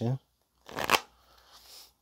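Tarot cards being shuffled: one short riffle about a second in, followed by faint rustling as the deck is handled.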